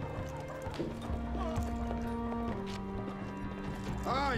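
Film score holding long, sustained notes that shift pitch twice, over a horse's hooves on gravel beside a waiting carriage.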